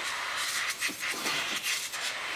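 Backpack sprayer spraying from its hand wand: a steady hiss, with faint voices under it.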